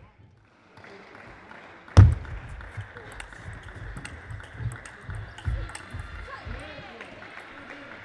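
A table tennis rally: the celluloid-type plastic ball clicking off the rackets and the table in an irregular rhythm, with the sharpest, loudest hit about two seconds in, and low thuds mixed among the hits.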